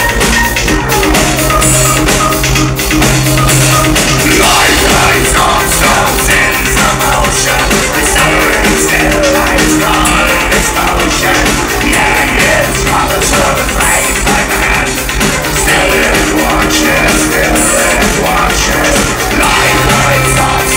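Dark-wave band playing live through a club PA: electronic music with a steady drum-kit beat, loud and unbroken throughout.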